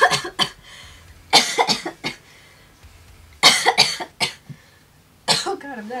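A woman with a head cold coughing in four short fits, each of several quick harsh coughs, roughly every one and a half seconds.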